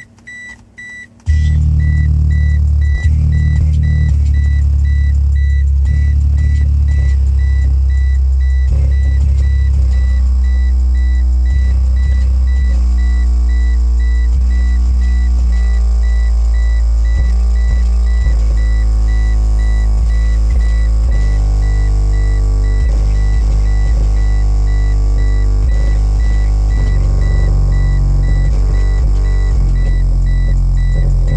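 Bazooka 6.5-inch subwoofer playing a sub-bass woofer excursion test track inside a car cabin. Loud deep bass comes in about a second in and holds steady, and shifting higher musical tones join over it from about ten seconds in.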